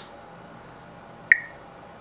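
A homemade Geiger counter with an LND712 tube gives one sharp click from its 2 kHz piezo buzzer about a second in, with a brief beep-like ring. Each click marks one pulse from the Geiger tube, a single detected particle.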